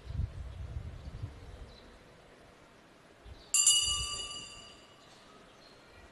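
A small metal altar bell struck once, about three and a half seconds in, ringing with several high clear tones that fade out over about a second and a half. Before it there is a low rumble for the first second or so.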